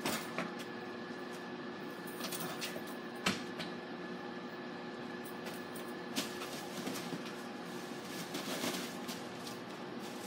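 Wrestlers scuffling and grappling, with about three sharp thumps of bodies landing, at the start, about three seconds in and about six seconds in, and rustling in between, over a steady hum.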